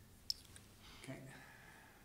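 A single short, sharp click about a third of a second in, in a quiet room.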